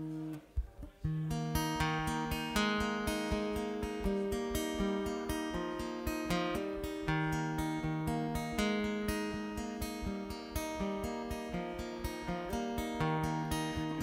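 Solo acoustic guitar playing a song's intro: a chord rings, breaks off briefly, then from about a second in a steady, even pattern of quick strokes carries on.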